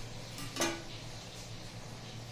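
Pair of scissors set down on a glass tabletop: one sharp clink with a short ring about half a second in, over a steady low hum.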